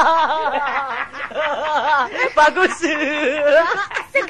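A voice laughing in short, quickly repeated bursts, a snickering laugh, with some further voiced sounds in the later part.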